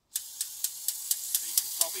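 Haji battery-operated tinplate Boeing Vertol 107 toy helicopter's noise mechanism starting up as soon as the batteries go in: a loud steady hiss with a sharp click about four times a second.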